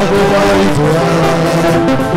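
A congregation singing a praise chorus together, voices holding long notes that slide from one pitch to the next.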